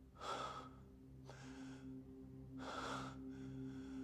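A man breathing, three audible breaths about a second apart, over a faint steady low drone from the film's score.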